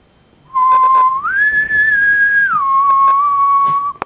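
A person whistling a held note that steps up to a higher note about a second in, holds it, and drops back to the first note for the rest of the time.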